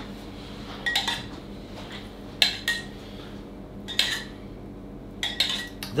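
A metal spoon clinking and scraping against a copper saucepan while scooping glaze, about half a dozen separate clinks, some ringing briefly.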